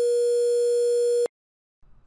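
A 480 Hz sine tone re-quantized to 3 bits: a steady electronic beep carrying extra quantization-noise artifacts on top of the pure tone. It cuts off suddenly about a second and a quarter in.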